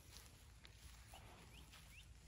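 Quiet outdoor ambience, near silence, with three faint short rising chirps from a bird in the second half.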